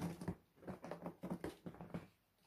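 A cat raking its claws on a corrugated cardboard scratch pad: a quick run of scratching strokes, about seven a second, that stops abruptly at the end.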